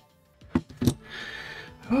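Two sharp clicks about a third of a second apart, then a short scrape, as the printed resin scissor halves and their fastening hardware are handled and fitted together.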